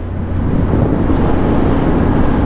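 Yamaha Ténéré 700 World Raid's 689 cc CP2 parallel-twin engine running steadily at cruising speed, mixed with wind and road noise picked up by the bike-mounted camera.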